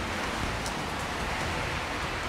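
Steady rain falling, heard as an even hiss through an outdoor microphone.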